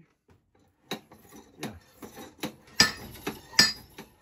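Homemade treadle hammer worked by foot, its hammer head striking the steel anvil plate over and over in ringing metallic clanks, under a second apart, getting louder through the second half.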